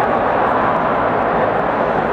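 Steady crowd noise filling a large, echoing sports hall: many voices blurred into one even din, with no single voice standing out.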